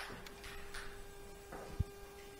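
Faint rustling and crunching of footsteps over a rubble-strewn floor, with one dull thump near the end. Under it runs a faint steady hum.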